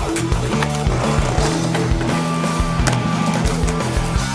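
Backing music with a steady beat, with a skateboard rolling and clacking on concrete pavement.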